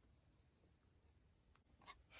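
Near silence, with one faint short sound near the end.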